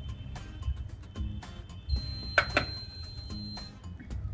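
The circuit board's buzzer gives one steady, high-pitched beep of just under two seconds as the fingerprint locker system powers up. Two sharp clicks come in the middle of the beep, and background music plays throughout.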